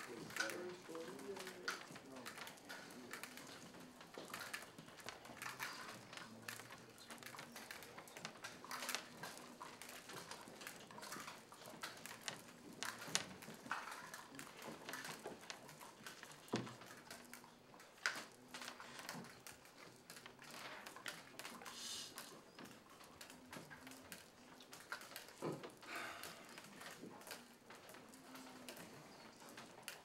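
Quiet classroom: faint murmuring voices and scattered small clicks and taps as students push Skittles across paper and desktops while counting them.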